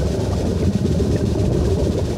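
Steady low rumble of water heard underwater, with the bubbling of a scuba diver's exhaled breath venting from the regulator.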